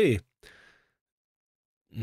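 A man's word trailing off, then a faint short exhale, followed by about a second of dead silence before he speaks again.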